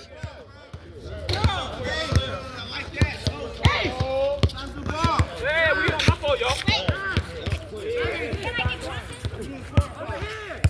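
Basketballs bouncing on a hard outdoor court: irregular thuds from more than one ball at once, with players' voices talking over them.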